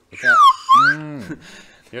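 Slide whistle sliding down and then quickly back up, two glides within about a second, with a low voice-like sound underneath that trails off.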